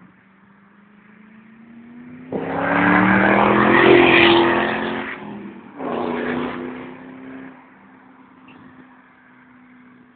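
Ford Mustang V8 accelerating hard, its engine note loud and rising in pitch from about two seconds in. After a brief break it surges again, then settles to a steady drone that fades away.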